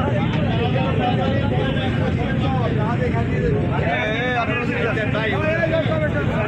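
People's voices talking over the steady low drone of a river launch's engine.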